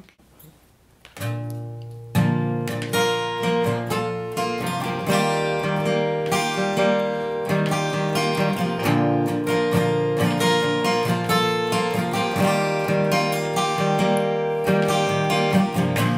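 Acoustic guitar intro. After a brief hush a low note rings about a second in, then chords are strummed steadily from about two seconds in.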